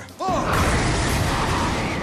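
TV action sound effect: a dense, steady rushing noise that sets in about a quarter second in, over the show's background music.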